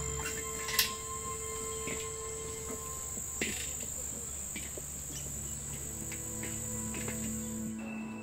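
Steady high-pitched insect chirring that stops just before the end, with a single sharp knock about a second in and a soft sustained music drone underneath.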